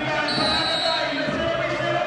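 Referee's whistle blown once, a short steady blast of under a second, signalling the kick-off, over the voices of the crowd in the stands.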